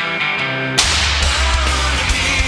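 Live rock band: an electric guitar plays on its own, then a little under a second in the drums and the full band come in together with a loud crash, and the band plays on at full volume.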